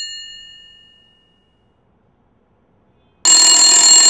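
Telephone bell ringing: the last ring dies away over about a second, then after a silent pause the next ring starts just over three seconds in. The call is going unanswered.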